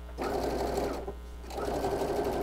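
Brother sewing machine running zigzag stitches through quilted placemat fabric, in two short runs with a brief pause between.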